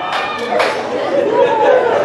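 Speech: a man preaching through a microphone, with other voices chattering alongside.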